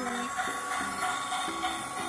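A toy steam locomotive's smoke effect gives off a steady hiss, which starts suddenly just before this moment, with a simple tune playing over it.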